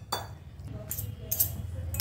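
A metal spoon clinking against a glass bowl a few times as pasta salad is stirred, over a steady low hum.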